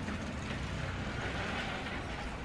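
Steady outdoor background noise, an even hiss over a low hum, with no distinct events.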